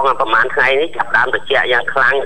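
Only speech: a man talking without pause, his voice narrow and thin as over a telephone line.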